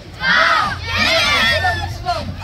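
A group of children shouting together in two long, loud yells, many high voices overlapping, as the race starts.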